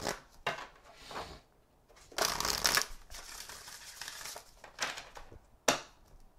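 A Love Your Inner Goddess oracle card deck being shuffled by hand: papery rustling in short bursts, loudest about two to three seconds in, with one sharp click near the end.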